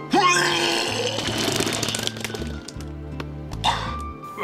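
A man retching and vomiting in a loud, gurgling burst over the first two seconds, with a shorter burst near the end, over background music with a steady bass line.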